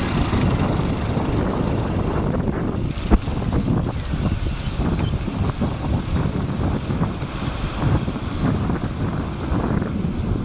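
Wind buffeting a camcorder microphone while filming from a moving bicycle: a steady, gusty rushing noise, with one sharp knock about three seconds in.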